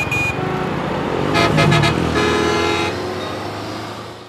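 Busy street traffic: bus and motorbike engines running, with vehicle horns honking twice, about a second and a half in and again just after two seconds.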